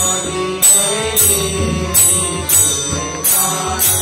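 Hindu devotional bhajan played live on harmonium and two sets of tabla, with a bright metallic clash on a steady beat about every two-thirds of a second and a singing voice over the sustained harmonium chords.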